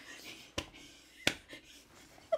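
Two short, sharp taps about two-thirds of a second apart over quiet room tone.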